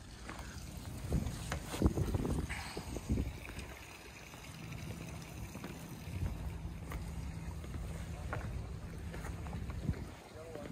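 Knocks and thumps of someone climbing out of a yacht's cabin and stepping on deck, then a steady low rumble with a faint hum, like wind on the microphone, while walking along the deck.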